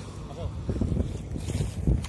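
Wind buffeting the phone's microphone in irregular low gusts, with faint voices in the background.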